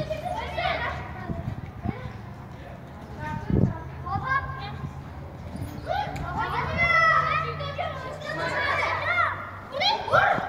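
Children shouting and calling to each other during a football game, the calls growing busier in the second half. There is a single dull thud about three and a half seconds in.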